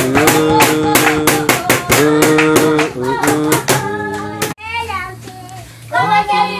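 Children singing a praise song to steady rhythmic hand clapping, about four claps a second. About four and a half seconds in, the clapping stops and a single voice carries on more quietly with a wavering pitch.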